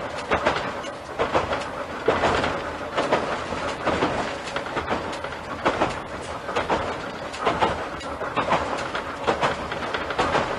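Kanbara Railway Moha 41 electric railcar running along the line, heard from inside the front of the car, with the wheels clattering over rail joints about once a second.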